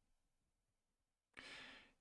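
Near silence, then about one and a half seconds in a man's short, faint intake of breath.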